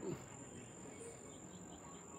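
Crickets trilling faintly in one steady high-pitched note, over quiet outdoor background noise.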